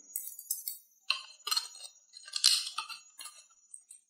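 Plastic bottle and cap being handled: a few short, scattered crinkles and clicks of thin plastic.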